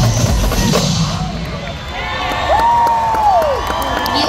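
Drumline drums playing over a cheering, shouting crowd; the drumming drops away about a second in, leaving the crowd's cheers and a long held shout.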